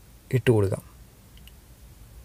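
A single short spoken word just under half a second in, then low room tone with a faint click.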